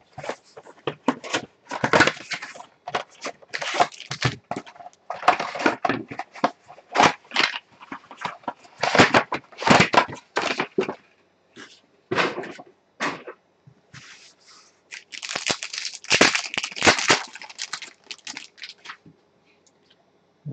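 Trading-card hobby box and its wrapped card packs being torn open and handled: a dense run of crinkling, tearing and crackling, quieter for a few seconds in the middle.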